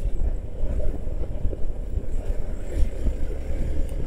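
Motorcycle riding slowly on a rough, narrow lane: a steady low rumble of engine and tyres on the road surface, with a little wind on the microphone.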